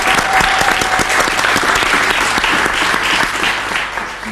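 Studio audience and presenters applauding, a dense clapping that eases slightly near the end.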